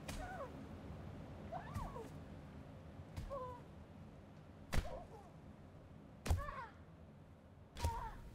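A series of heavy blows, about six spread over eight seconds, each followed by a short high-pitched cry that rises and falls: someone striking something over and over in a fit of rage.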